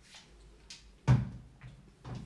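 A single hard knock with a dull thud about a second in, preceded by a couple of lighter clicks, like an object being handled and set down close to the microphone.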